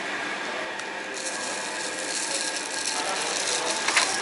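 Wooden stir stick scraping around inside a paper cup of latte, a rasping scrape from about a second in. Just before the end, a single sharp click.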